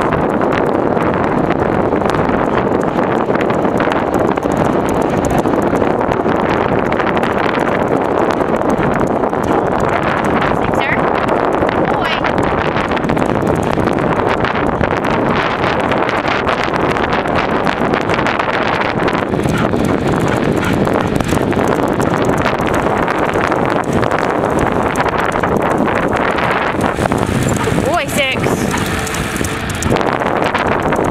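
Steady, loud rush of wind and road noise on the microphone of a moving bicycle, with the dog's trotting steps on the pavement blended in.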